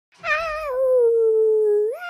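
A young boy singing one long, held note: it starts just after the beginning, slides down in pitch, then holds steady for over a second.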